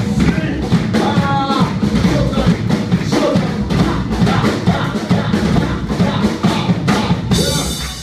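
A live rock band playing, its drum kit keeping a steady beat under keyboards. The music drops away near the end.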